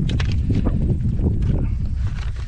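Paper trail map crackling as it is handled and folded, several sharp crinkles over a steady low rumble.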